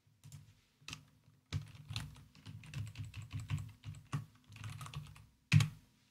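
Typing on a computer keyboard: a quick, uneven run of keystrokes, with one louder strike near the end.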